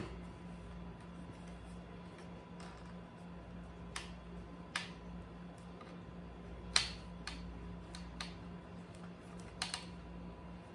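Small, sharp plastic clicks and taps, scattered and irregular with the sharpest about seven seconds in, as a flashlight mount is handled and tightened onto the rail of a plastic BB gun, over a steady low hum.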